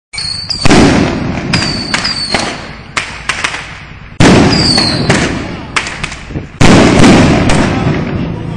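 Fireworks going off on open ground: three loud blasts, each fading slowly, with sharper cracks in between and several short falling whistles.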